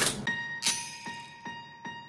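Background music: a quiet intro of held bell-like chime tones over soft, evenly spaced strikes, about two and a half a second.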